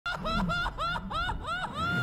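An animated character laughing in a high voice from a film soundtrack: a quick string of about six short 'ha' notes, roughly four a second, running into a longer drawn-out note near the end.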